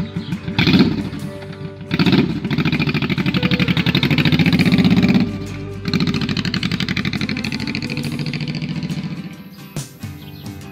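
Cruiser motorcycle engine pulling away under throttle, with two sharp blips near the start. It then climbs steadily in pitch, drops off abruptly for a gear change about five seconds in, picks up again and fades as the bike rides off. Guitar music plays underneath.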